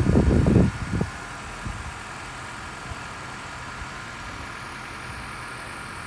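Low, irregular rumble on the microphone for about the first second, then a steady low background hum with a few faint steady tones.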